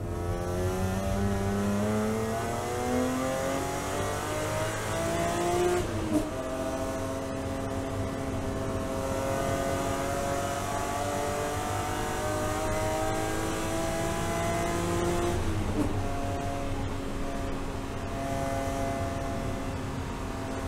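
BMW M3 E36 race car's straight-six engine heard from inside the cabin, accelerating hard with its pitch climbing. It upshifts about six seconds in and again about sixteen seconds in, the pitch dropping at each shift and then rising again.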